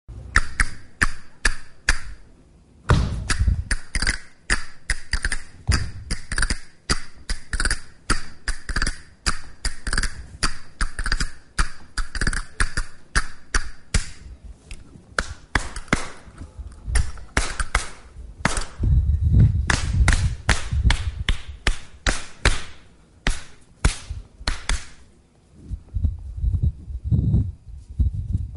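Paso doble opening in a quick flamenco rhythm of sharp percussive strikes, stamps and claps at about two to three a second. There are heavier, deeper thuds about three seconds in and again around twenty seconds, and a short lull just before the first of them.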